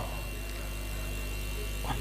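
Steady electrical mains hum from the microphone and sound system, a low even buzz with a faint thin higher tone over light background hiss; a voice breaks in right at the end.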